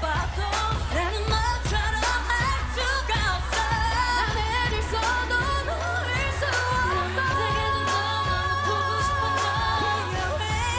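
Women singing a K-pop song live into microphones over a pop backing track with a steady beat, the vocal passing between singers, with longer held notes in the second half.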